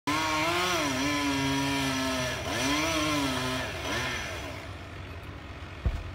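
Chainsaw running at high revs, its pitch dipping under load and climbing back twice as it cuts into the pine trunk, then dying away over the last two seconds. A heavy thud near the end.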